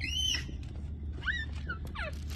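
Short, high-pitched whining calls from an animal: a few quick arching glides in pitch, the loudest right at the start and more about a second and a half in, over a steady low rumble.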